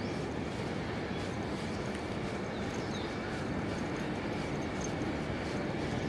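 Footsteps on a paved road at a steady walking pace, over a steady background rumble of city traffic.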